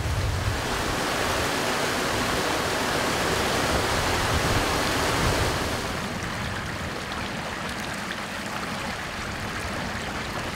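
Water pouring over a river outfall's sluice gate, a steady rush. About six seconds in it gives way to a quieter flow of water spilling out from under a round flap gate.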